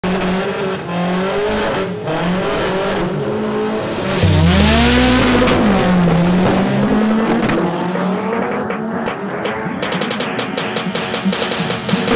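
Front-wheel-drive Honda Civic drag car's four-cylinder engine held at high revs on the line. About four seconds in it launches with tyre squeal, its revs climbing and dropping back at each gear change as the car pulls away down the strip and fades.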